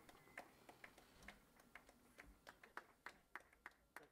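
Near silence with faint, irregular clicks, a few a second.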